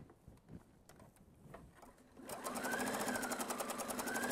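Electric home sewing machine, with thick elastic thread wound in its bobbin, starts stitching a little past halfway. It makes a rapid even needle rhythm, and its motor whine rises and eases off. Before that there are about two seconds of faint fabric handling.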